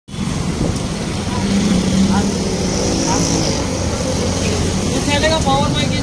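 Steady low rumble of a motor vehicle's engine amid street traffic noise, with a person's voice briefly near the end.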